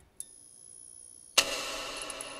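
Faint high clicking, then about a second and a half in a sudden struck sound with several pitches that rings on and slowly fades.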